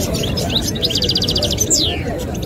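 Caged European goldfinch singing: quick twittering chirps, a fast rattling trill about halfway through, and a sharp downward-sliding note near the end, over a low background crowd murmur.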